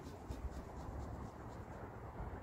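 Outdoor wind on the microphone, a low, uneven rumble, with a few faint scratchy ticks over it.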